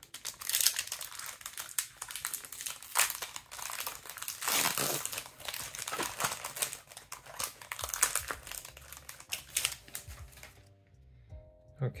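Foil wrapper of an Upper Deck hockey card pack crinkling as it is torn open and handled, in irregular crackly bursts. The crinkling stops a little over a second before the end.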